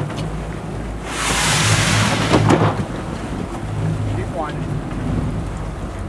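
Boat engine running with a steady low hum. About a second in, a loud rushing noise swells up and dies away after about two seconds.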